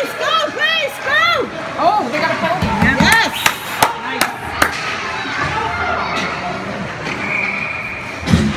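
Ice hockey play in an indoor rink: raised voices shouting in the first second or so, then several sharp knocks of sticks and puck a few seconds in, over the steady noise of the arena.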